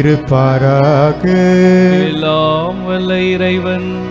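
Church hymn singing: a voice singing long held notes that glide and waver in pitch.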